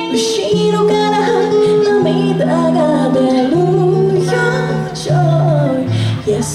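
A woman singing into a microphone over a guitar accompaniment, played live through amplifiers.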